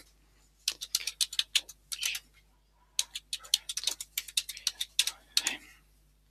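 Computer keyboard being typed on: quick, irregular runs of key clicks as a Wi-Fi password is entered, with a short pause about halfway through before the typing resumes.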